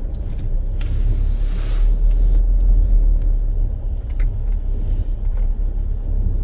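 Low, steady rumble of a car driving slowly on a snow-covered road, heard from inside the cabin, with a brief hiss about a second and a half in.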